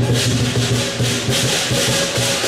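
Lion dance percussion: a large drum beating rapidly under continuous crashing cymbals, with a ringing tone sustained underneath.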